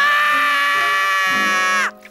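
A cartoon character's voice letting out one long, loud scream, held on a steady pitch for nearly two seconds and dipping in pitch as it stops shortly before the end.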